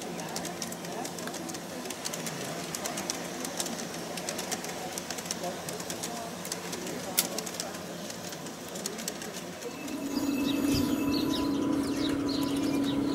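G-scale LGB model train of Rhaetian Railway coaches rolling along garden-railway track, with many small rapid clicks from the wheels over the rail joints. About ten seconds in the sound turns into a louder steady hum with short bird chirps above it.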